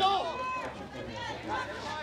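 Several spectators' voices calling out and shouting at once, overlapping, with no clear words.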